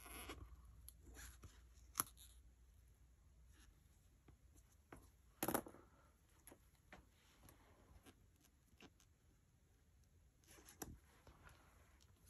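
Near silence with a few faint paper-handling sounds from fingers pressing and peeling small alphabet sticker letters on a scrapbook page: a sharp tick about two seconds in, a brief rustle in the middle, and a smaller one near the end.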